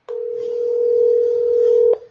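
Telephone ringback tone: one steady ring about two seconds long, heard from a handheld phone while an outgoing call waits to be answered.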